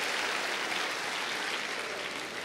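Audience applauding, a steady patter of clapping that eases slightly toward the end.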